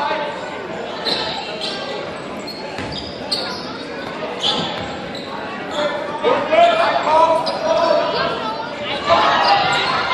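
A basketball bouncing on a hardwood gym floor during play, with short high squeaks, in a large echoing hall. Shouting voices of players and spectators grow louder from about six seconds in.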